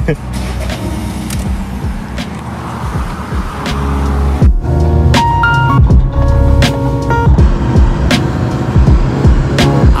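Car cabin noise that swells over the first few seconds, then background music with a steady beat comes in about halfway through.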